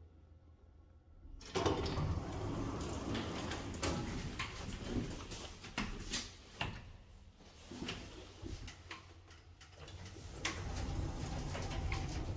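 Automatic sliding doors of a ThyssenKrupp synergy Blue elevator running, with the sound starting suddenly about a second and a half in and rising again near the end. A few sharp clicks in between from the car's push buttons.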